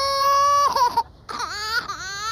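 A small boy crying: one long, steady wail, a brief pause for breath about a second in, then a second wail that rises in pitch.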